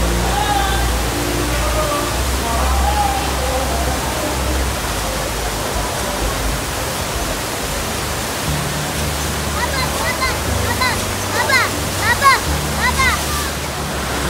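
Steady rush of water from a FlowRider wave machine, a thin sheet of pumped water running up the surf ramp. Near the end there is a run of short, high, rising-and-falling calls.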